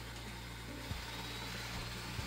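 Roborock Q5 Pro robot vacuum running faintly as it pulls away from its charging dock to start a cleaning run: a steady low motor hum.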